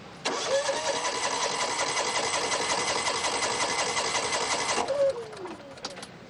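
Honda EU6500is inverter generator's engine being cranked by its starter for about four and a half seconds with a fast, even pulsing. The pitch rises as it spins up and falls as it winds down, and the engine does not catch: the generator has broken down.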